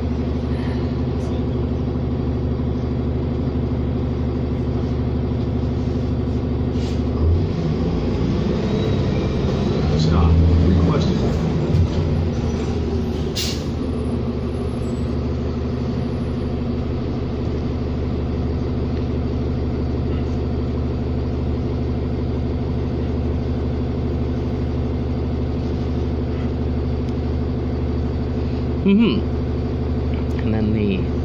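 Diesel engine of a 2007 New Flyer D40LFR city bus running steadily, heard from inside the passenger cabin as the bus drives. Its note swells and shifts in pitch for a few seconds about a third of the way in, with a single sharp click shortly after.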